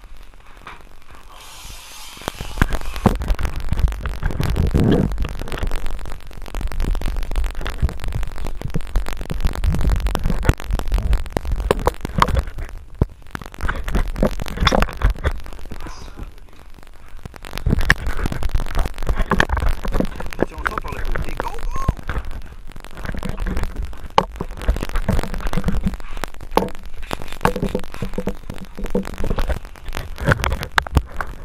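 Muffled handling noise from a GoPro in its housing carried around a boat deck: a low rumbling with irregular knocks and clatter, which starts about two seconds in, and indistinct voices.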